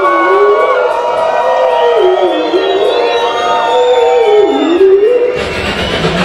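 Beatboxer's voice through the PA holding a high, whistle-like tone that dips in pitch and comes back up three times, over crowd noise. A deep bass sound cuts in near the end.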